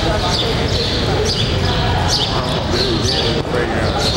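Men's voices talking over a steady low rumble, with short high chirps repeating about twice a second.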